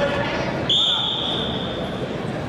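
A single high, steady whistle-like tone starts sharply about 0.7 s in and fades out over about a second, over the murmur of voices in a large hall.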